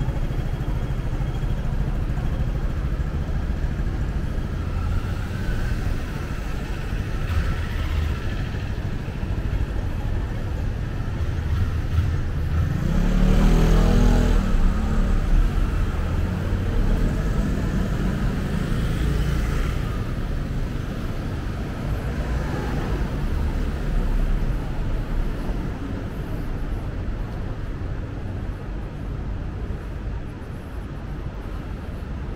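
Street traffic running steadily, with one vehicle passing close about halfway through, the loudest moment for two or three seconds.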